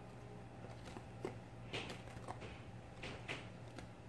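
Faint scrapes and light clicks of a plastic grout spreader being dragged through wet grout over broken mirror pieces, a few separate strokes over a steady low hum.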